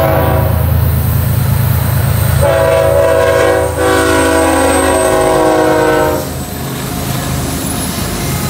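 BNSF diesel locomotive's multi-chime air horn blowing long blasts as the train passes close by: the chord changes about two and a half seconds in, breaks briefly near four seconds, and stops about six seconds in. The locomotives' diesel engines rumble low underneath throughout.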